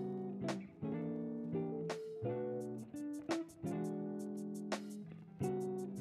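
Background music: strummed acoustic guitar chords.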